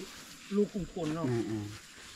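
Quiet speech: a person's voice talking briefly, with no other distinct sound standing out.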